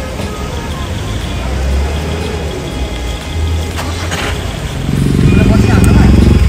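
A car engine running with a low rumble, among the chatter of a crowd. A louder pitched sound, music or voices, comes in about a second before the end.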